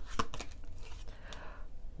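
Oracle cards being handled: a few light clicks and taps as a card is drawn from the deck, then a brief soft sliding rustle of card stock.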